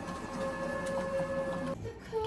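Video game music playing from a TV, a few held electronic notes with a faint regular ticking, cutting off abruptly near the end.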